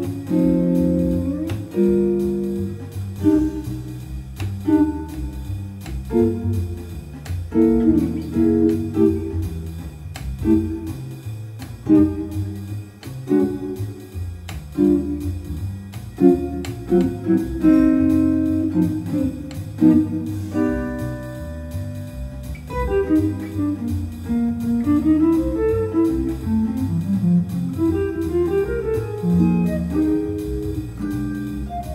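Guild T-50 Slim hollow-body electric guitar comping jazz chords in short rhythmic stabs, with a rising run of single notes near the end.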